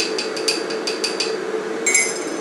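Metal teaspoon clinking against a glass coffee jar while spooning out coffee, about six light taps a second for just over a second, then a single ringing tap near the end. An electric kettle hums steadily underneath as it heats.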